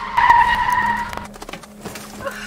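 Car tyres squealing as an SUV brakes hard to a stop, one steady high squeal that cuts off a little over a second in, followed by a few faint clicks.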